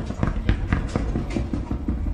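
Bowling pins clattering in a rapid, irregular run of hard knocks over a steady low rumble.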